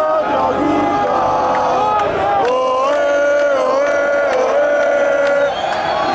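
A large crowd of football supporters singing a chant together, long held notes rising and falling in pitch.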